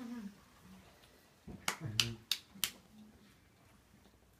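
Four quick, sharp hand claps or slaps, close together about halfway through, with brief low voice sounds mixed in.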